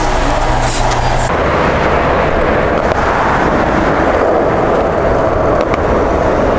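Road traffic on a city street: a steady, loud rush of passing cars. It follows about a second of indoor store hum.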